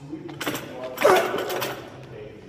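Barbell clean with bumper plates. A loud effort grunt comes as the bar is pulled, then the loaded bar and plates clatter as it is caught on the shoulders and the feet land, loudest about a second in.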